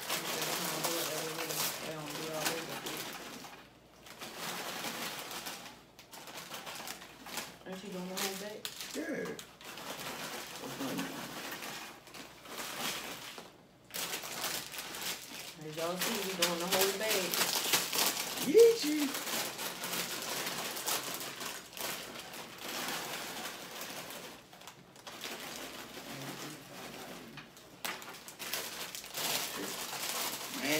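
Foil snack-chip bags crinkling and rustling as they are torn open and shaken, with chips pouring out and clattering, in irregular spurts with short pauses.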